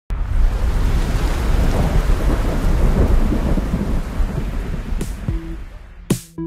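A loud, deep rumble with a dense hiss, like rolling thunder in rain. It starts abruptly and fades away over about five seconds. Electronic music begins just at the end.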